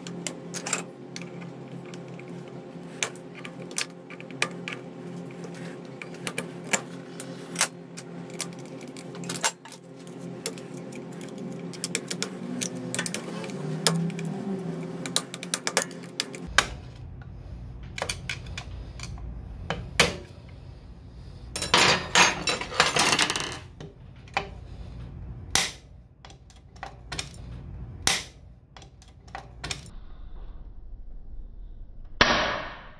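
Metal hand tools clicking, tapping and scraping against the aluminium transmission gear case of a Daelim Forte 125 scooter as a screwdriver and a long bar are worked at it. The sounds are scattered sharp clicks, with a dense burst of rattling and scraping just past the two-thirds mark, the loudest part. A steady low hum runs under the first half and then gives way to a low rumble.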